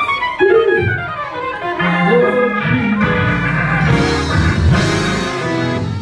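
Organ playing sustained chords, with a quick falling run of notes at the start.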